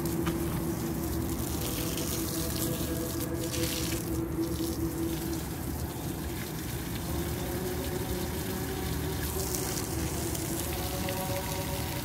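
Water from a garden hose spraying onto sandy soil and tree trunks, a steady rushing splash. A steady hum runs under it, dropping out briefly about halfway through.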